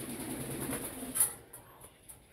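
Green pet parakeet right at the microphone making a low, wavering vocal sound for about a second and a half, with a sharp click a little over a second in.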